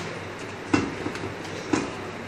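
Bicycle tyre being worked onto a road wheel's rim by hand: rubber and bead rubbing against the rim, with two sharp knocks about a second apart, the wheel and rim knocking against the floor as it is turned.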